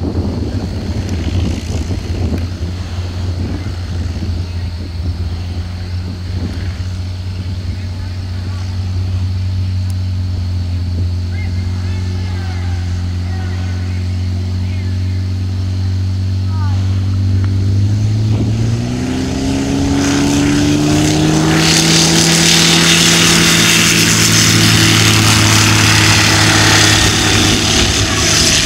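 Zenair 601 light aircraft's engine and propeller running at a steady low throttle while taxiing, then opened up about eighteen seconds in: the pitch rises smoothly and the sound grows louder, with propeller roar, as the plane makes its takeoff run.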